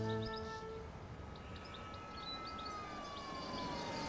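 A musical sting fades out, then a faint siren-like tone holds steady and slides down in pitch near the end, with a few faint high chirps.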